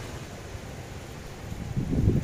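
Wind rushing over the microphone: a steady low rumble with a faint hiss, swelling again near the end.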